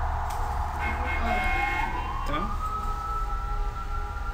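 A high whining tone rises in pitch over about a second, starting about a second in, then holds steady, over a low steady hum.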